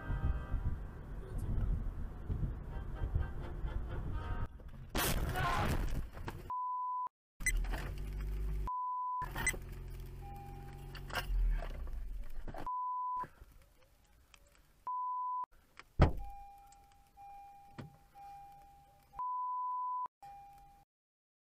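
Dashcam audio of a car collision: road and engine noise, then a loud crash about five seconds in. Afterwards the occupants' speech is repeatedly covered by censor beeps, with a sharp knock and a repeating electronic chime near the end.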